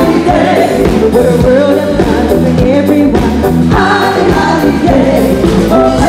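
Live disco-pop band playing at full volume through a concert PA: women's voices singing together over electric guitar, drums and keyboards with a steady beat.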